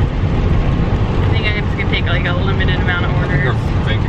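Steady low road and engine rumble inside a moving minivan's cabin. Over it, a woman talks from about a second in.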